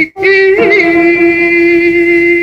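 A solo voice singing one long held note, with a short break just after the start and a quick turn in pitch about half a second in.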